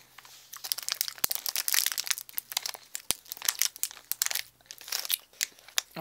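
Packaging being crinkled by hand in quick, irregular crackles, starting just under a second in and running for about five seconds.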